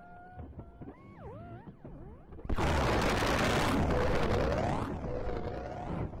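Experimental electronic music from an amplified ImageWriter printer and synthesizer ensemble. Quiet gliding tones bend up and down, then about two and a half seconds in a loud wash of noise cuts in suddenly, with sweeping tones running through it.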